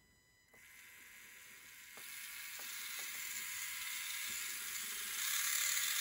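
Small geared DC hobby motor starting about half a second in and whirring, growing steadily faster and louder as more light reaches the light sensor that sets its speed.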